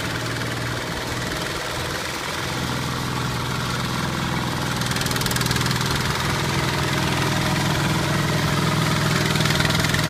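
Two-wheel power tiller's single-cylinder diesel engine running steadily as the machine churns through wet paddy mud on cage wheels. It grows gradually louder from about two and a half seconds in as the tiller comes closer.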